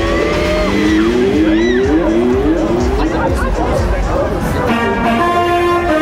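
Riders on a drop-tower gondola crying out and screaming in rising and falling whoops as it comes down, over loud fairground noise. Ride music with steady held notes comes in near the end.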